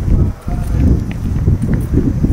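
Footsteps on pavement under a heavy, uneven low rumble of wind and handling noise on a moving handheld camera's microphone, with a brief drop in the rumble about half a second in.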